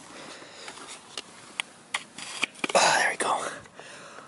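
A few sharp clicks from a manual locking hub's dial being turned by hand on a pickup's front wheel, then a breathy, whisper-like sound about three seconds in. The hub is damaged, with its internal tangs broken.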